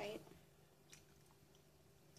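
Near silence with a steady low hum, and a few faint clicks about a second in from a metal spoon scooping cereal in a plastic tub.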